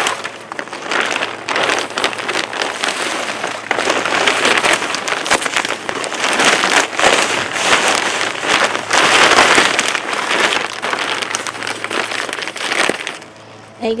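Potting mix pouring out of a plastic bag into a fabric pot: a steady rushing hiss with crackling, stopping about a second before the end.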